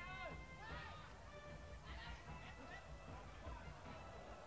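Faint ambience: scattered distant voices with faint music underneath.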